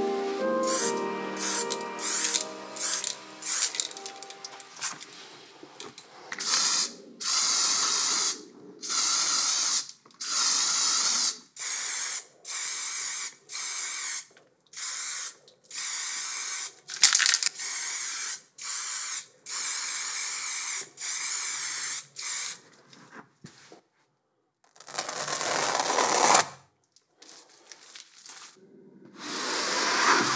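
Aerosol spray paint can spraying onto canvas in many short hissing bursts, each about half a second to a second long, with brief pauses between them.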